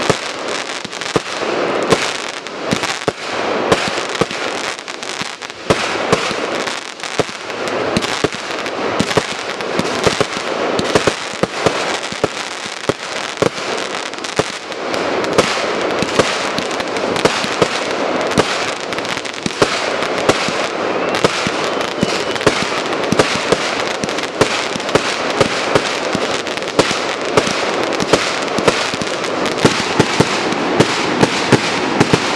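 Aerial fireworks bursting in a rapid barrage: many sharp reports over continuous crackling, getting louder and coming faster from about halfway through.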